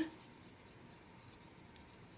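Faint scratching of a water brush's bristles on watercolor paper as it wets a swatch of water-soluble wax crayon, with a faint tick near the end.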